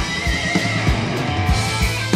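Live blues-rock band playing an instrumental passage: distorted electric guitars over bass and a steady kick-drum beat. A high, wavering bent lead-guitar note sounds at the start.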